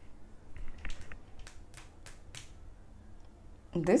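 Tarot cards being handled by hand on a table: a run of about ten light, sharp clicks and taps over two seconds or so, as cards and the deck are touched by long fingernails.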